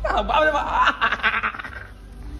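People laughing and chuckling in quick pulses, dying away near the end.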